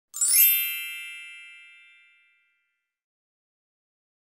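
A single bright chime struck once, a logo-intro sound effect: many high ringing tones that fade away over about two seconds.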